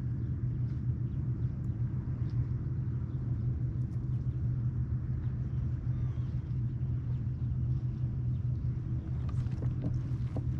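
A boat motor running steadily, a low drone that holds level throughout, with a few faint light ticks over it.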